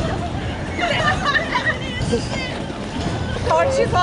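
A woman's high-pitched squealing and laughter as she jumps about in shallow water, startled by a small fish, over a steady background of water and other voices. A little talk follows near the end.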